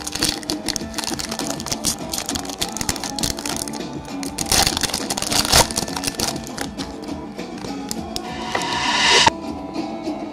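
Background music over the crinkling and rustling of a foil booster-pack wrapper being handled and torn open, with a longer rustle building near the end that stops suddenly.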